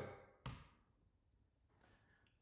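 Near silence: room tone, with one brief soft sound about half a second in.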